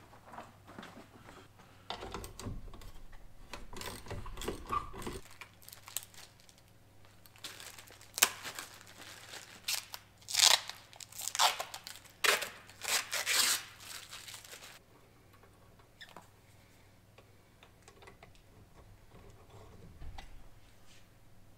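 Plastic packaging being crinkled and torn open by hand, in a run of short, sharp bursts lasting several seconds in the middle.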